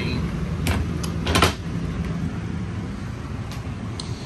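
Cabinet door in an RV being handled: a few sharp clicks and knocks in the first second and a half, the loudest about a second and a half in. A steady low hum runs underneath.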